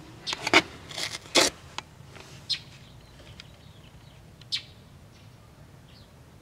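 A few short clicks and scrapes of handling, bunched in the first second and a half, then single ones about two and a half and four and a half seconds in.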